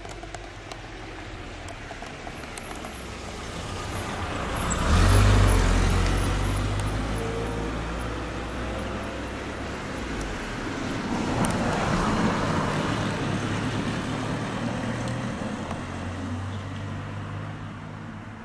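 Road traffic: motor vehicles passing on a street. The loudest goes by about five seconds in with a deep engine rumble, and a second one swells and fades around twelve seconds.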